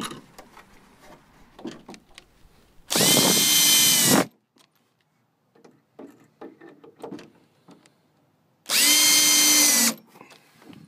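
Cordless drill-driver driving screws through a cedar fence picket into the gate's 2x4 frame. There are two runs of about a second each, around three seconds in and near the end; in each the motor whine rises as it starts and then holds steady. Faint clicks and knocks come between the runs.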